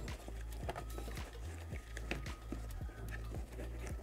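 Quiet background music with a steady low bass, and scattered soft clicks and knocks of hands pressing DJI FPV goggles into the cut foam of a hard carrying case.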